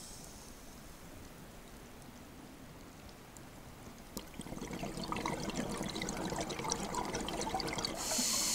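Underwater sound. A faint steady hiss, then about four seconds in a louder bubbling starts, thick with small crackles, that builds toward the end.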